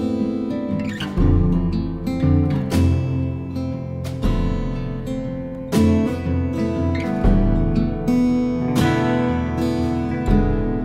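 Background music of plucked acoustic guitar: picked notes over a deep bass note struck about every three seconds.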